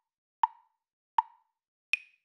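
Short pitched pops of an intro sound-effect sting, about one every three-quarters of a second: two on the same note, then a higher one at the end.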